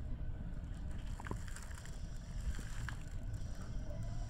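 Low steady rumble of an electric commuter train, heard from inside the cab as it starts pulling away from the platform, with a few faint clicks.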